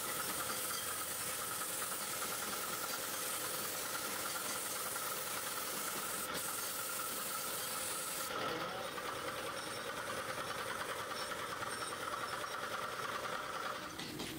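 Gravity-feed compressed-air spray gun hissing steadily as it sprays a coating, with a faint steady whistle in the hiss; the sharpest, highest part of the hiss eases a little about eight seconds in.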